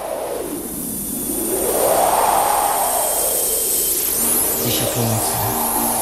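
Opening of a 1990s disco polo song: a synthesizer noise sweep swells and glides down, up and down again in pitch, then a pulsing synth bass and bright gliding synth notes come in about four seconds in.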